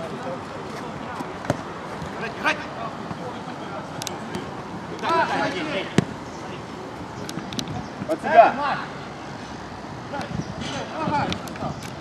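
Men's short shouts during a mini-football game, loudest about two-thirds of the way through, with a few sharp kicks of the ball in between.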